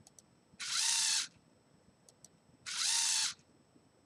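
Two LEGO Mindstorms EV3 motors run in sync for one rotation, twice, under encoder control. Each run is a short geared-motor whine of under a second whose pitch rises as the motors start and falls as they stop.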